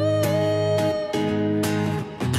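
Acoustic-electric guitar strumming chords in a live song, with one sung note held over it that ends about a second in.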